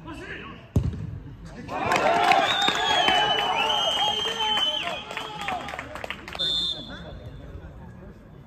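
A football struck hard with one sharp thump, followed about a second later by several men shouting and cheering together for four or five seconds as a goal is scored in a five-a-side match.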